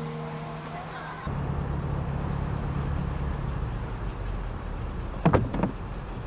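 The tail of soft music fades out, then from about a second in a car engine idles steadily with a low rumble. Near the end there is a brief, louder vocal sound.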